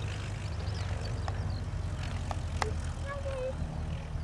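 Light single-engine propeller aerobatic aircraft running, a steady low drone, with a few sharp clicks and short high chirps over it.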